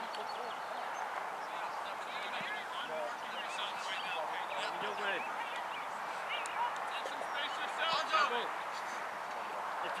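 Distant, indistinct voices of players and spectators calling out across a soccer field over a steady outdoor background hum, with a louder shout about eight seconds in.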